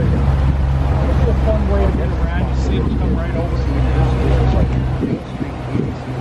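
Small boat's motor running with a steady low drone under background chatter; the drone drops away about five seconds in.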